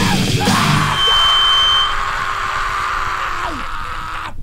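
Hardcore punk recording: a shouted vocal over distorted band noise, then the instruments hold a ringing note that slowly fades, with a low note sliding down near the end.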